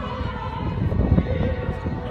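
Operatic soprano singing a held, wavering line with wide vibrato over a full symphony orchestra, with low pulses in the accompaniment and a swell about a second in.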